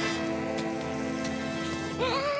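Cartoon fizzing, sizzling sound effect of hair dissolving under hair-removal cream, over a held music chord.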